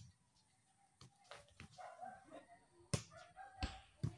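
Volleyball being struck by hands and forearms in play: a few quiet, sharp slaps, the sharpest about three seconds in.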